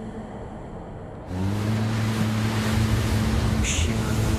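Ocean waves crashing against rocks: a loud, sustained rush of surf sets in suddenly about a second in, over a low held music note.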